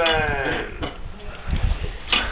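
A person's drawn-out vocal sound, one pitched sound falling slightly in pitch and lasting under a second at the start, followed by a few faint low knocks.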